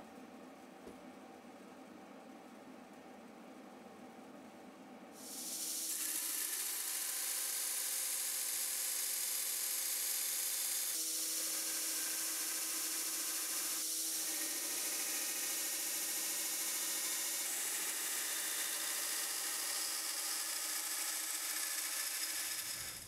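A few quiet seconds of pen-on-paper tracing. Then, about five seconds in, a belt grinder comes in with a steady hiss and hum as a 1084 high-carbon steel dagger blank is pressed against its belt, grinding the blank to its traced profile.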